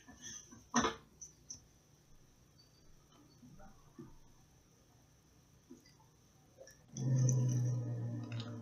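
A few light clicks and taps of steel needle-nose pliers pressing foil down onto a lead pellet, the sharpest about a second in. Near the end comes a steady, even low hum lasting about a second and a half, louder than the taps.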